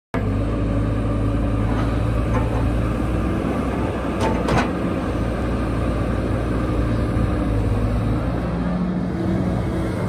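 Caterpillar 312D L excavator's diesel engine running steadily while it works its hydraulic arm and bucket and swings round. Two short, sharp knocks come just after four seconds in.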